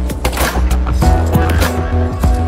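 Logo-intro music with heavy bass and sharp percussive hits, with a whooshing sweep about half a second in.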